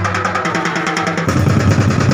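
Street-dance percussion ensemble playing fast, even drum strokes; the deep bass drum drops back for the first second or so and comes back in about 1.3 seconds in.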